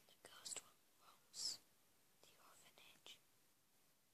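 Faint whispering: a few short, breathy bursts of a person's voice, the loudest about one and a half seconds in.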